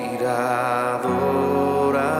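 Live Christian worship music: a male vocalist holds one long note with vibrato over sustained keyboard chords, and the bass and chord change about halfway through.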